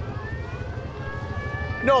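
Flatbed tow truck's engine rumbling low as it drives past. A faint thin tone glides slowly up in pitch and then holds steady.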